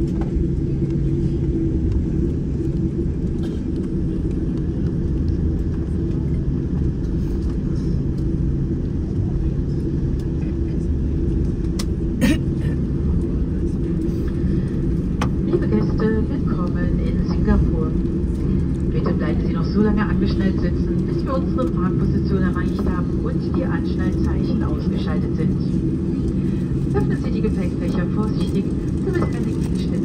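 Steady low rumble inside the cabin of a Boeing 747-8 rolling out on the runway after landing and turning off to taxi, with its engines at low thrust and a steady low hum. A sharp click comes about 12 seconds in, and indistinct voices murmur through the second half.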